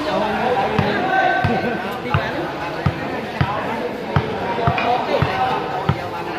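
A ball bouncing or being struck repeatedly: short low thuds about every two-thirds of a second, under the chatter of spectators.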